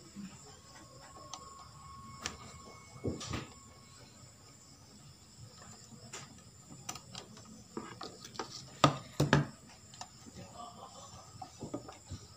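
Scattered light clicks and taps of tools on a TV circuit board as an electrolytic capacitor is desoldered and removed, with a pair of knocks about three seconds in and two louder sharp knocks about nine seconds in.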